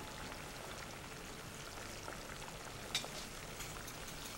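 Steady sizzling hiss of a restaurant kitchen, with one light click about three seconds in.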